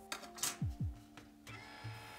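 Faint background music with sustained tones, with a few light clicks in the first second.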